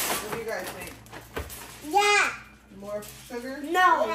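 Children's voices calling out, with short bursts without clear words about two seconds in and near the end. Under them, the crinkle and light knocks of a plastic zip-top bag of cereal and powdered sugar being handled.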